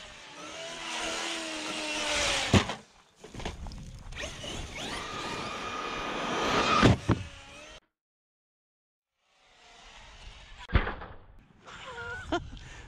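Traxxas XRT 8S electric RC truck driving hard: its brushless motor whine and tyre noise rise as it accelerates, and a sharp thump of a hard landing comes about two and a half seconds in and again near seven seconds. After a short silence near eight seconds, another single thump comes a little before the end.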